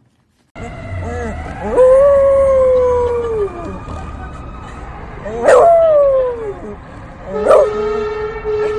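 Beagle howling: three long howls, each sliding down in pitch, about two seconds in, halfway through and near the end, with a faint steady high tone rising slowly behind them.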